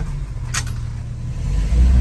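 1949 Austin A40's 1.2-litre four-cylinder engine and drivetrain, heard from inside the cabin while the car is driven in first gear, a steady low rumble that grows louder near the end. A short sharp click or knock comes about half a second in.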